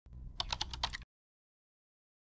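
Computer-keyboard typing sound effect: a quick run of about seven key clicks over a low hum, stopping abruptly about a second in.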